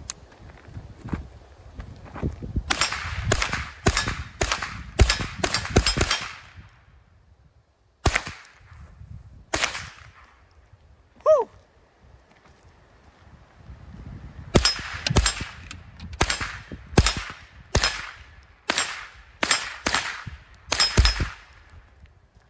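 GSG-16 .22 Long Rifle semi-automatic carbine fired in quick strings of single shots, about two a second. A run of about eight shots comes early, two lone shots follow, and a run of about ten more comes later.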